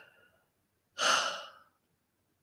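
A single breathy sigh, a short unvoiced exhale about a second in, lasting about half a second.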